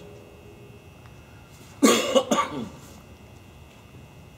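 A man coughing: a short fit of a few coughs about two seconds in, starting sharply.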